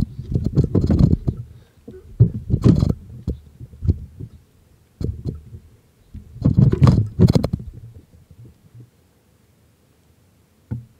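Microphone handling noise from a camera being moved about on rocks: irregular low rumbling bumps with a few sharp scrapes, dying away about eight seconds in.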